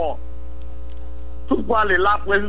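A steady low hum with a few faint higher tones under it, holding level through a pause in the talk. A man's voice starts again about one and a half seconds in.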